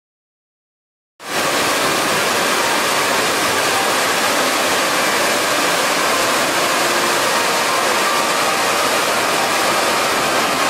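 The AquaSphere globe fountain's water cascading from under the globe into its pool, a steady rushing splash that cuts in suddenly about a second in.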